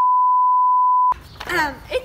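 Steady 1 kHz test-tone beep of the kind played over TV colour bars, a single pure tone that cuts off abruptly about a second in; voices follow.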